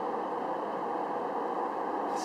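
Steady background noise, an even low hum and hiss with no distinct events.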